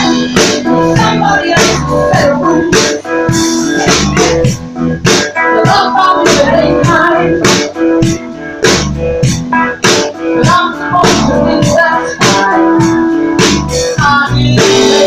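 Live blues band playing: drum kit keeping a steady beat with cymbal hits, under electric guitar and keyboard.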